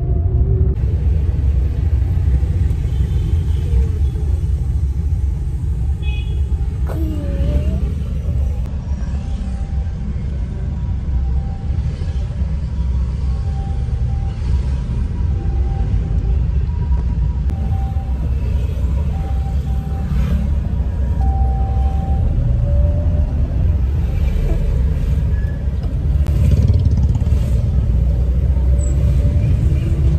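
Steady low rumble of a car driving through traffic, heard from inside the cabin. A run of faint short tones repeats through the middle.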